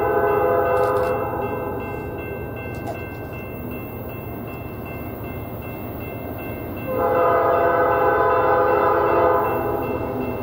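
Norfolk Southern freight locomotive's air horn blowing as the train approaches: one blast ends about a second and a half in, and another long blast starts sharply about seven seconds in and holds for some two and a half seconds. Under it runs a steady low rumble.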